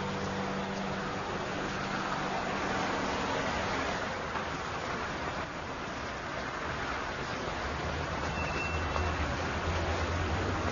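A steady wash of noise, with the last held notes of background music fading out in the first few seconds and a low hum coming in past halfway.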